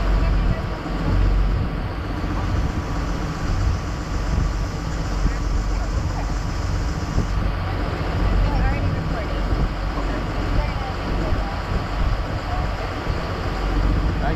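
Parasail boat running under way: a steady engine rumble.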